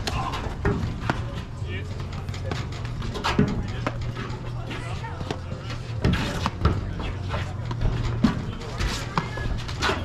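Platform tennis rally: paddles striking the rubber ball and the ball bouncing on the court deck, sharp knocks at an irregular pace of roughly one a second, loudest about six seconds in.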